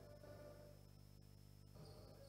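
Near silence with only a faint, steady hum.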